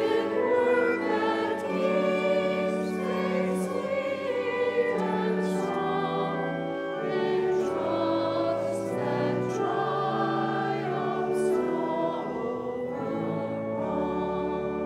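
Church choir singing slow, held notes with keyboard accompaniment.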